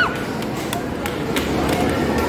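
Busy arcade din: people's voices mixed with game-machine noise, with a few sharp clicks or knocks scattered through it.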